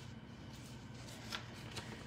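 Faint handling of paper greeting cards, a light rustle with a soft tap a little over a second in, over a low steady hum.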